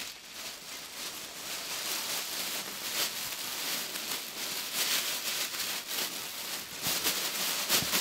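A thin plastic bag rustling and crinkling as a cloth garment is handled and stuffed into it, with many small crackles throughout.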